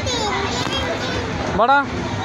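Children's voices and chatter, with one loud rising-and-falling call from a voice near the end.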